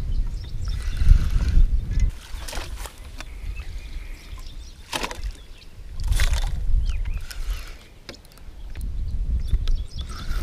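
Water splashing and sloshing in the shallows at the bank as a landing net is dipped in to land a hooked carp, with a few sharp splashes around five and six seconds in. A low rumble of handling noise runs under it at the start and again after six seconds.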